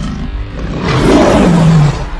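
Lion roar sound effect, starting about a second in and falling in pitch as it ends, over background music.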